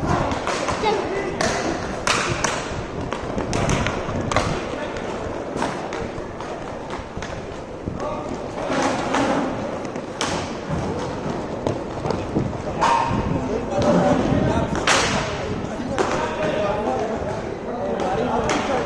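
Inline hockey play on a plastic-tile court: sticks hitting the puck and slapping the floor and boards, giving irregular sharp knocks, the loudest about 15 s in, with players' shouts in between.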